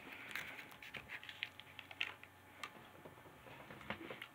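Faint small clicks and crinkles of a Scentsy wax bar in its plastic packaging being handled, with soft sniffing as the bar is held to the nose to smell it.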